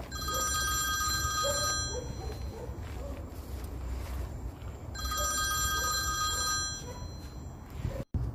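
Mobile phone ringing with an electronic ringtone: two rings of about two seconds each, with a pause of about three seconds between them.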